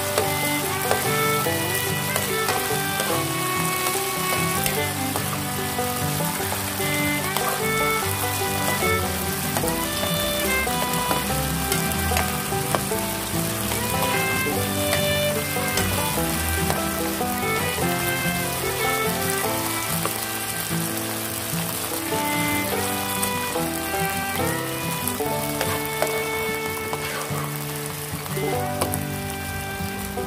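Beef sizzling as it is stir-fried on high heat in a frying pan and stirred with a spatula, with background music playing throughout.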